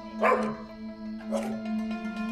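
A dog barking twice, about a second apart, over steady background music.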